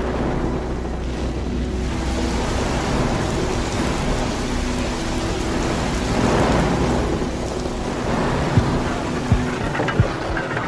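A steady, even rushing hiss like heavy rain, with a faint sustained tone underneath. Two short dull knocks come near the end.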